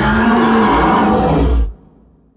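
A loud, drawn-out voiced scream-roar, lasting under two seconds and cutting off sharply near the end.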